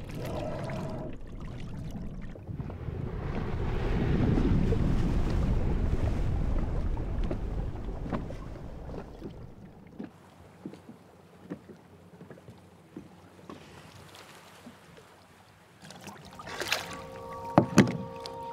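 Water rushing around a moving boat on the sea, swelling to its loudest about four to eight seconds in and then falling away to a quiet stretch with scattered small clicks. Near the end two sharp splashy hits, after which steady sustained tones begin.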